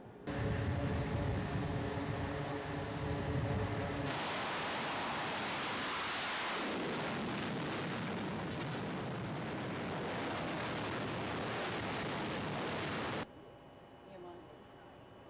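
Carrier jet aircraft on the flight deck. First comes a loud engine whine with steady tones over a low rumble. From about four seconds in there is a loud, even rushing roar of jet exhaust as a plane launches, and it cuts off suddenly near the end.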